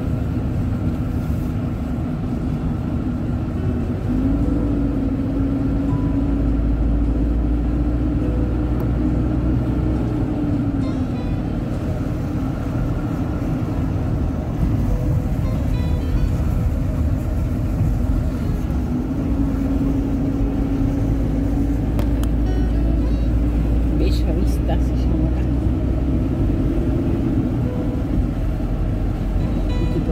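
Inside a moving car: steady tyre and road rumble with an engine drone that rises and falls gently in pitch, a little louder from about four seconds in.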